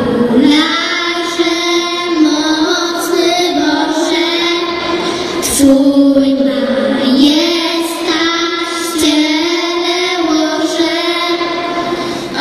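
Three young girls singing a Polish Christmas carol together into microphones, in phrases with long held notes.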